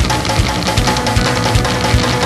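Lo-fi garage rock band playing loud and distorted: a driving kick-drum beat under distorted bass and guitar, with no vocals.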